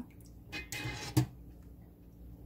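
Water draining from a mesh strainer of blanched butterbur into a stainless steel bowl: a brief faint trickle and patter, then a single light knock just past the middle.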